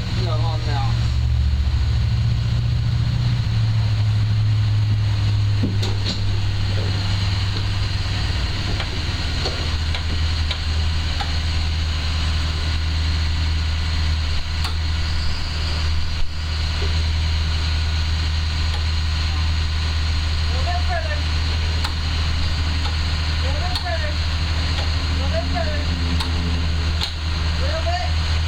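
A bus engine running with a steady low hum, its pitch dropping about nine seconds in.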